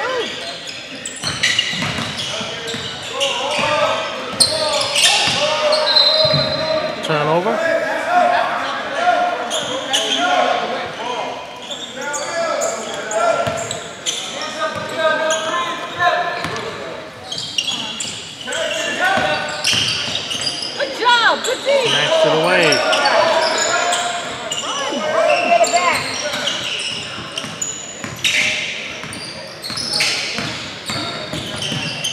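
Basketball game in an echoing gymnasium: the ball bouncing on the hardwood court, with players and spectators calling out throughout and a few short squeaks.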